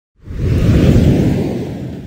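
A deep whoosh sound effect with a heavy rumble. It swells in just after the start and slowly fades.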